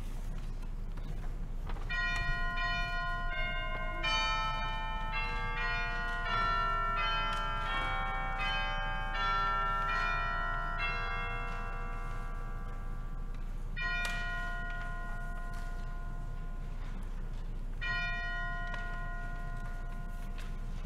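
Bells or chimes ring a run of overlapping notes, then two single struck chords about four seconds apart, each left to ring out, over a steady low hum.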